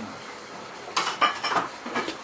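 A quick run of five or six sharp clicks and clinks, starting about a second in after a quiet start.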